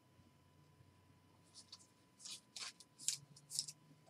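A trading card and its clear plastic holder being handled: several short, faint scrapes and rustles of card and plastic sliding in the fingers, starting about halfway through.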